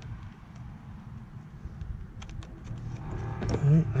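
A few faint small clicks of hands threading nuts onto the scooter seat bracket's bolts, over low steady background noise, with a man's voice starting near the end.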